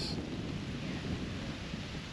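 Wind on the microphone: a steady rushing noise with a low rumble.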